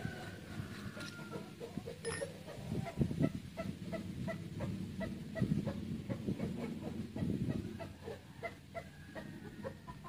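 Chicken clucking in a steady run of short notes, about three a second, over a low rumble of background and handling noise.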